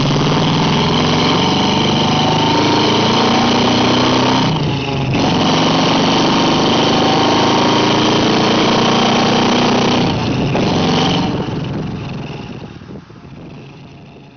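A car engine accelerating hard, its pitch climbing steadily. There is a short break about four and a half seconds in, like a gear change, and it climbs again. It fades away over the last three seconds.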